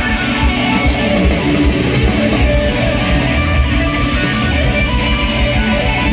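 Live pop-rock band music playing loudly with guitar prominent, heard from among the concert audience.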